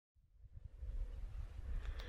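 Wind buffeting the microphone: a low, uneven rumble that starts about half a second in.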